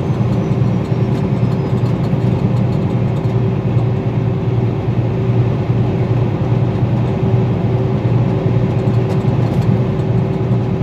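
Steady road and engine noise inside a moving vehicle's cabin at highway speed: an even low rumble with a faint steady hum on top.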